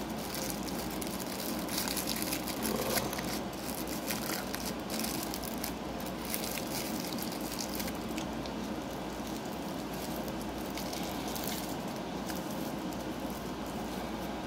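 Rolling paper crinkling and rustling between the fingers as a joint is rolled, in spells of soft crackle over a steady background hum.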